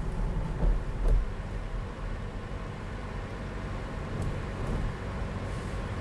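A car driving: a steady low rumble of engine and road noise, with a couple of soft bumps about a second in.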